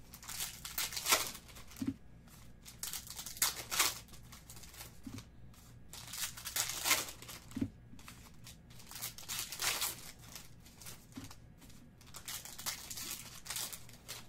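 Foil trading-card pack wrappers crinkling and tearing open, in a burst about every three seconds, over a faint steady low hum.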